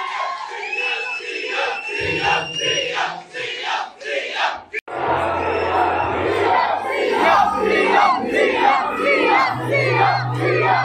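A large crowd of people shouting and cheering together. The sound breaks off abruptly about five seconds in, and afterwards the shouting is louder and denser.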